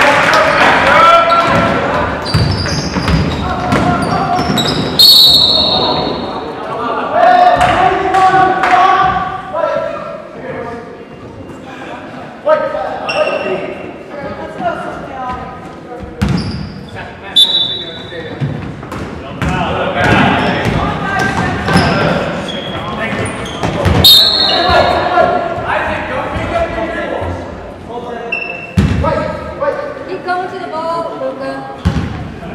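Basketball game sounds in a gymnasium: a ball bouncing on the hardwood court, with players and spectators calling out and talking indistinctly. A few short high squeaks come through, about five seconds in, again after about seventeen seconds, and near twenty-four seconds.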